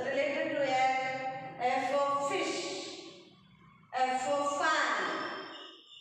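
A woman's voice talking in two phrases with a short pause about three seconds in.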